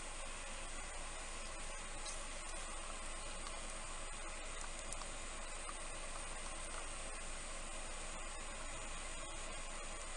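Steady, faint hiss of background noise with no distinct sounds standing out.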